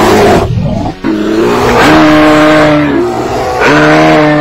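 Loud, drawn-out bear roars: a rough burst at the start, then a long held roar from about a second in to nearly three seconds, and another starting shortly before the end.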